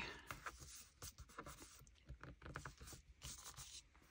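Faint scratching and rubbing of paper as small postage stamps are glued and pressed down onto a collage page by hand, with scattered light taps and a short scrape about three seconds in.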